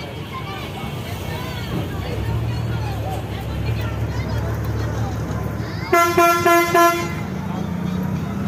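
Inside a moving bus, the engine drones steadily under passengers' chatter. About six seconds in, a loud vehicle horn sounds in a quick string of about four short toots lasting about a second.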